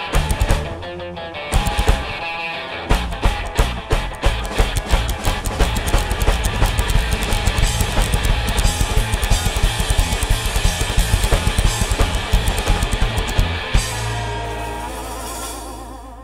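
Live band of electric guitar, upright double bass and drum kit playing a song's instrumental ending: a few stop-start hits, then about ten seconds of fast, busy drumming under the guitar, closing on one held final chord that rings and fades.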